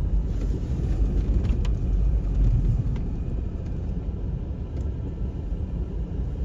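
Steady low rumble of a car's engine and road noise heard from inside the cabin as it rolls slowly along a snowy street, with a couple of faint clicks.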